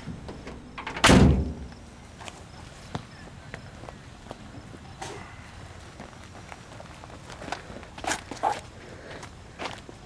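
A pickup truck's tailgate slams shut with one loud thud about a second in, then footsteps and light knocks on pavement.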